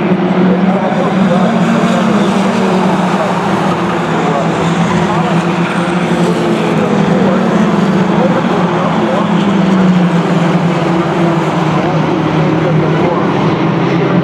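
A pack of four-cylinder Mini Stock race cars running together around a short paved oval at racing speed, making a continuous, layered engine drone that wavers slightly as they lap.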